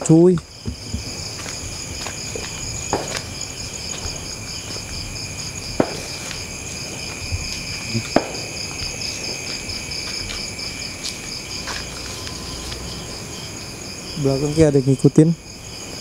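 Night chorus of crickets and other insects: a steady, high-pitched trilling at several pitches, one of them finely pulsing. A few scattered clicks and knocks are heard through it.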